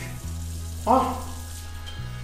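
Water running from a bathroom sink tap as a man washes and rubs his face over the basin, a steady hiss of water.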